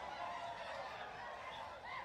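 Faint, distant shouting and chanting of a large massed group of soldiers performing a yel-yel, many voices blending together.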